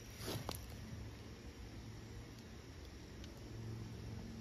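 Quiet outdoor ambience: crickets' faint steady high trill over a low, even background rumble.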